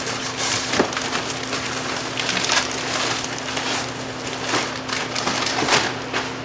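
Plastic bag liner rustling and crinkling as it is pushed down into a cardboard box, with irregular sharp crackles and scrapes against the cardboard. A faint steady hum runs underneath.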